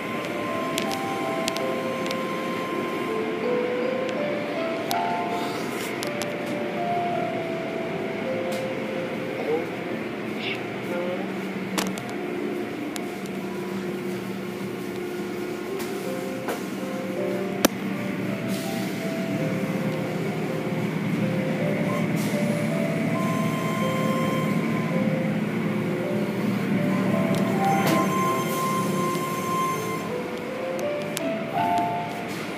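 Steady mechanical noise of an automatic car wash, its spinning brushes and water spray running continuously, with a simple melody of background music playing over it. A single sharp click stands out a little past the middle.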